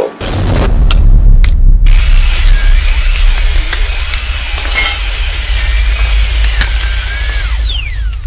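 Mechanical sound effect from a sampled animated-film scene. A loud, steady low rumble starts suddenly. After a couple of short clicks, a high wavering whine comes in about two seconds in, like a power tool or machine, and swoops down in pitch near the end.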